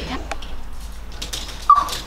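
A woman's short, high-pitched squeal about three-quarters of the way through, falling slightly in pitch, over faint shop room tone and small clicks.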